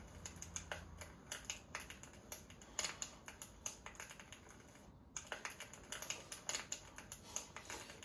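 Chopsticks clicking and tapping against a metal pot and a small bowl while eating, a string of irregular light clicks.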